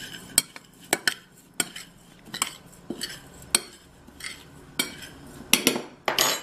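A metal spoon stirring dry rolled oats and protein powder in a ceramic bowl, clinking sharply against the bowl about every half second, with the soft scrape of the oats in between.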